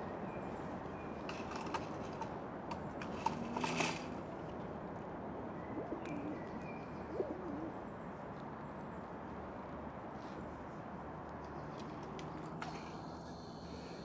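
Distant bird calls over a steady outdoor hush. About three to four seconds in there is a short run of small sharp cracks as a young red squirrel cracks cedar pine nuts in the shell from an open hand.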